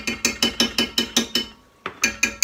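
A metal utensil knocking quickly against a small tin can of tomato paste to get the paste out, about six sharp, ringing taps a second. The tapping stops briefly and starts again near the end.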